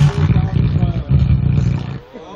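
Dance music on a party sound system breaking up into choppy, irregular bass pulses as the generator powering it runs out of fuel, then cutting off suddenly at the end.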